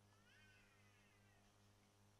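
Near silence over a steady low electrical hum, with one faint high-pitched call about a second long that rises and then falls in pitch early on.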